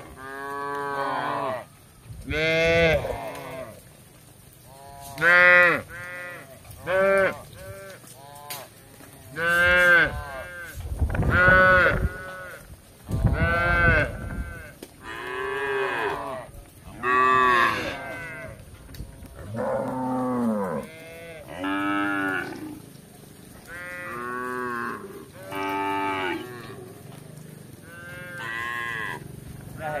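Several cows and calves mooing one after another, about fifteen calls in a row, each rising and then falling in pitch.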